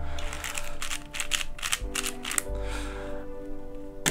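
Magnetic 4x4 speed cube (X-Man Ambition) being turned by hand: a quick run of plastic clicks from the layer turns, thinning out after about two seconds. Background music with held tones comes in under it.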